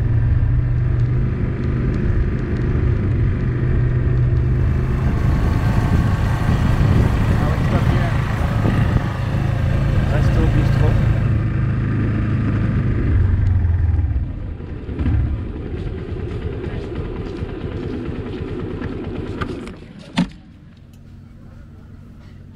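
Motorcycle engine idling steadily, then cutting off about fourteen seconds in, leaving quieter street background. A single sharp click near the end.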